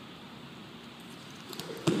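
Quiet room hiss, then near the end one sharp slap as a jump rope starts turning and strikes the floor at the first jump.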